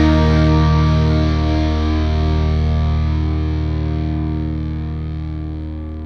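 Music: a distorted electric guitar chord held and slowly fading out.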